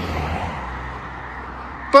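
Road traffic: a vehicle's tyre and engine noise, loudest at the start and fading away gradually over a steady low rumble, as a car goes by on the road.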